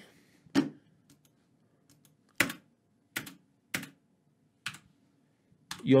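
A few irregular computer keyboard key clicks, about five distinct ones with some fainter ticks, over near silence. Two copies of a drum loop, one phase-inverted 180 degrees, are playing and cancel each other out exactly, so no music is heard.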